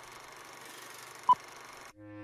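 Film countdown leader: a steady hiss of old film soundtrack noise with one short, loud beep about a second and a half in, the countdown's sync beep. The hiss cuts off suddenly near the end.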